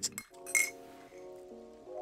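A metal spoon clinks once against a ceramic mug about half a second in, over quiet background music of held notes that step from pitch to pitch.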